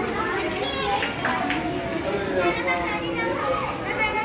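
A crowd of children chattering and calling out at once, many voices overlapping.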